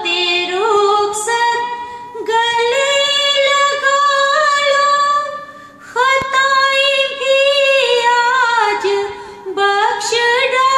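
A woman singing a Hindi film song unaccompanied into a handheld microphone, with long held notes and ornamented turns in the melody. She breaks briefly for breath about six seconds in.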